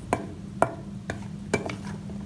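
Steel spoon stirring spice-coated ivy gourd slices in a stainless steel bowl, the spoon clinking against the bowl about every half second.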